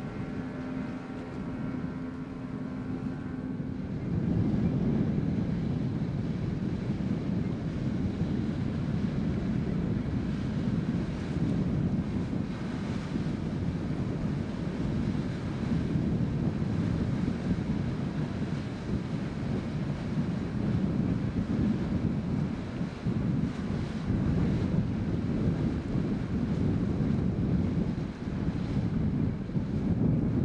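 Strong wind buffeting the microphone, a loud, steady, gusting rumble from about four seconds in to the end. Before it starts, a steady droning engine hum is heard for the first few seconds.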